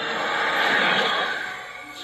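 Cartoon sound effect from a TV speaker: a rushing whoosh that swells to a peak about a second in and then fades, as the animal riders turn into streaks of light.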